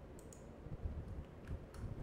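A few faint, scattered clicks at a computer as a question is entered into a chat box, over low background hum.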